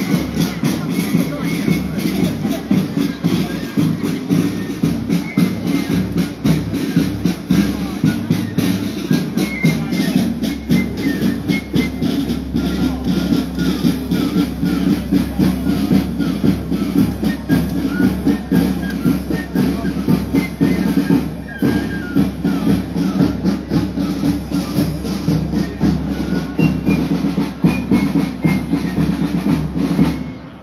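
Italian town wind band playing a march, brass and woodwinds over a steady bass drum beat. The music stops right at the end.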